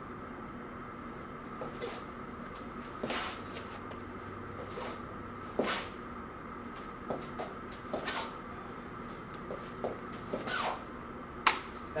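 Shoes stepping and scuffing on a rubber gym mat as feet move through a fighting-stance footwork drill, the lead foot stepping and the other foot dragged after it. About nine short scrapes and taps are spread through, over a steady faint hum.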